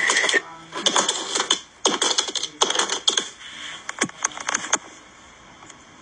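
Plastic cards slapping down one after another onto a wooden floor: a string of sharp, irregular clacks that die away after about five seconds.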